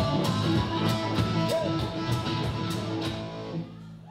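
Live bar band playing with electric guitars and bass over a steady beat of about three sharp strokes a second. About three seconds in the beat stops and the sound fades as the song ends.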